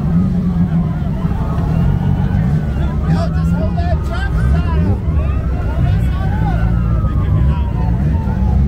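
A crowd of many people talking and calling out over one another, above a steady low rumble of idling car engines.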